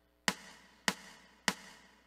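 Count-off clicks, three evenly spaced strokes a little over half a second apart, marking the beat of the two-measure count-off that precedes the accompaniment.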